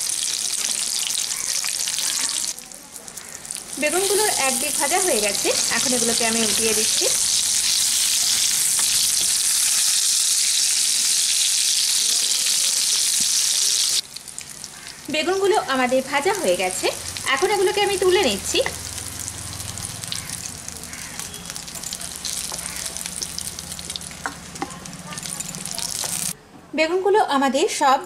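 Whole slit eggplants, rubbed with salt and turmeric, sizzling as they fry in mustard oil in a nonstick pan. The sizzle is loud and steady, then drops suddenly about halfway through to a softer sizzle.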